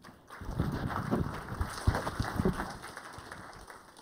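Handling noise from a clip-on lavalier microphone being fiddled with and unclipped from a shirt: an irregular run of low knocks and rubbing.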